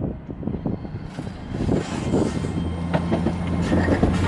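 TransPennine Express Class 802 bi-mode train running slowly into the platform, its underfloor diesel engines giving a low, steady hum that grows louder as the front draws level, over the rumble of wheels on the rails.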